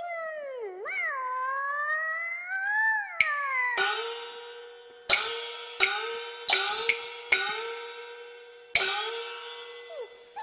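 Cantonese opera accompaniment: a high melodic phrase sliding up and down, then the percussion section comes in with about seven sharp gong and cymbal strikes, each left to ring and fade.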